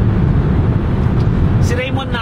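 Steady low rumble of a car's tyres and engine heard from inside the cabin while driving at highway speed, with a voice starting near the end.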